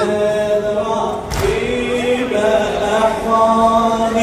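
Men's voices chanting a Muharram mourning lament (matam) together in long held notes. One brief sharp noise comes about a second in.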